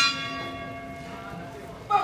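Boxing ring bell struck to start the round, its ringing fading away over about a second and a half. A brief sharp sound near the end.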